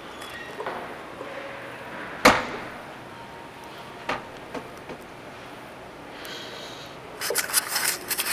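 Background hush of a large open hotel atrium, broken about two seconds in by one loud, sharp bang that echoes briefly, a lighter knock a couple of seconds later, and a quick clatter of clicks and rattles near the end.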